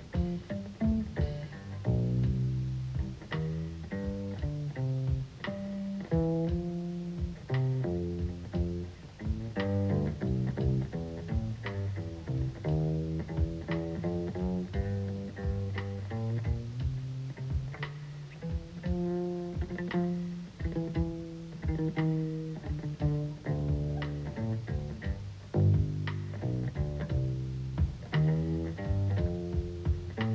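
Upright double bass played pizzicato in a jazz setting: a run of quick plucked notes carrying the music, like a bass solo.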